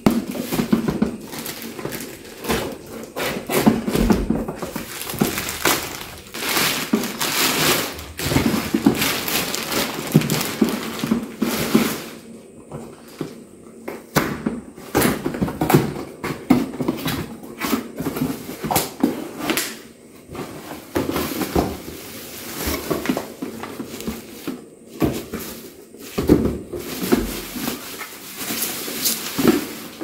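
Plastic packaging and cardboard being handled as a boxed blender is unpacked: irregular crinkling and rustling of a plastic bag and bubble wrap, with occasional knocks of the box.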